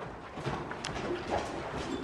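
Loose horses moving on the soft sand footing of an indoor arena: faint, low hoof thuds and shuffling, with one sharp click a little under a second in.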